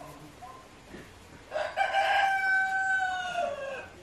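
A rooster crowing once: one long call that begins about a second and a half in, holds a steady pitch, then drops away at the end.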